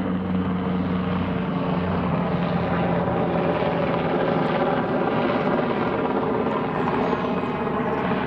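An aircraft flying low overhead, most likely a helicopter: a loud, steady engine drone with several tones in it, drowning out everything else.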